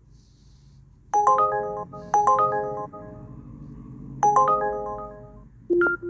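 Phone ringtone: phrases of bell-like chiming notes start about one, two and four seconds in, each fading away. A short, lower beep follows near the end.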